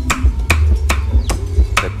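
Cleaver chopping crispy pork belly on a thick wooden chopping board: about five sharp, evenly spaced chops, a little over two a second.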